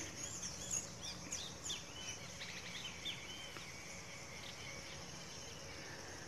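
Faint outdoor ambience: small birds chirping a quick series of short rising and falling calls through the first few seconds, over a steady high insect drone.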